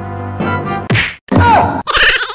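Comic sound effects: a brass music sting trails off, then two loud whack-like hits about a second in, the second with a short falling squeal.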